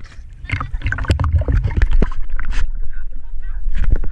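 Sea water splashing and slapping against a GoPro Hero5 held at the surface, a string of irregular sharp splashes over a low rumble of moving water and wind on the microphone.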